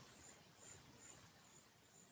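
Near silence: room tone, with a faint high chirp repeating about twice a second.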